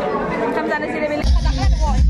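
Chatter of several voices in a room, then a little past the middle an electronic music track with a heavy, steady bass beat cuts in abruptly.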